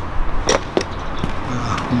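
A few sharp clicks from small motorcycle parts being handled: one loud click about half a second in, then two fainter ones, over a low steady hum.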